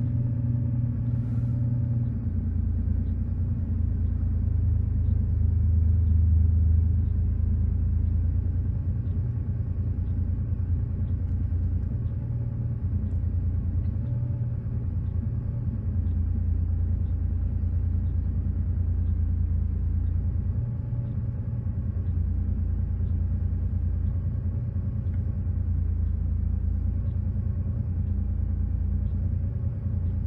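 Porsche 930-generation 911's air-cooled flat-six idling just after a cold start, held at a fast idle of a little over 1000 rpm while it warms up. It is a steady low running note heard from inside the cabin, rising slightly in loudness a few seconds in.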